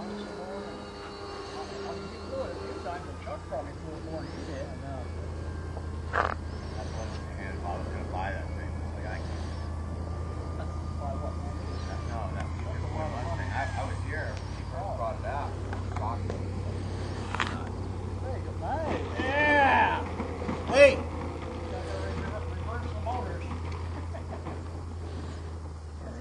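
Electric motors of a large radio-controlled P-38 model faintly whining and falling in pitch as it throttles back and comes in to land, over a steady low hum. Scattered nearby voices are heard, loudest about twenty seconds in.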